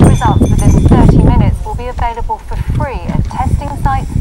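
Mostly speech, a person talking in short phrases, over a loud low background rumble that fades out about a second and a half in.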